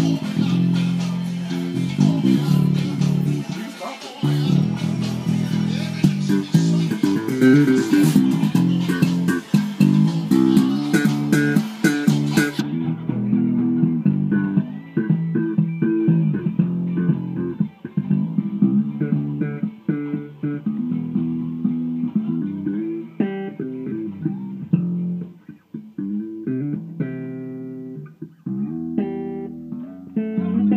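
Extended-range electric bass playing a gospel quartet bass line, with moving low notes played with other music.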